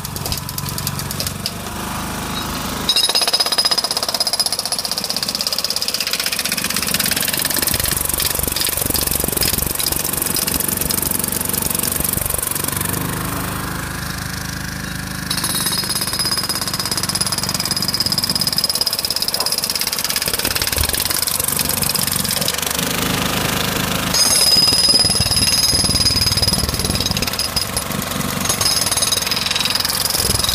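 Hand-held hydraulic breaker hammering continuously into a tarmac road surface, cracking it up. Its hammering gets a little softer about halfway through and louder again near the end.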